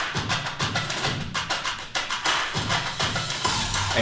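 Music with a steady, quick percussion beat.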